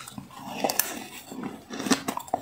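Biting and chewing a mouthful of powdery freezer frost: a few irregular, crisp crunches.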